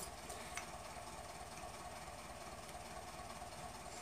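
Quiet steady background hum with a couple of faint clicks in the first second, as the cap of a new nail polish bottle is twisted open.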